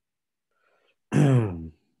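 A person clears their throat once, about a second in: a short voiced 'ahem' that falls in pitch, after a silent pause.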